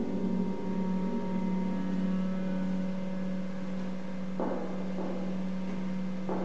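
A single low note held steadily and quietly in a contemporary chamber piece for clarinet, violin and harp. It follows a loud plucked chord and carries on unbroken, with faint short scrapes about four and a half seconds in.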